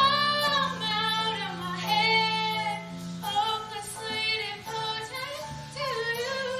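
A young woman singing a solo song in long held notes with vibrato, over sustained low instrumental accompaniment from a live pit band.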